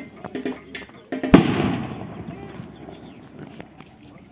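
A single loud firework bang about a second in, followed by a long fading echo, over the chatter of people walking.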